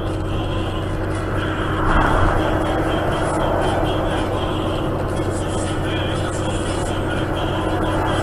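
Steady road and engine noise inside a truck cab cruising on an expressway, with a low constant hum. About two seconds in the noise swells as another truck pulls alongside to overtake.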